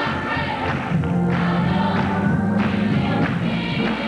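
A mixed youth gospel choir singing with instrumental accompaniment, holding long notes over a steady low bass line.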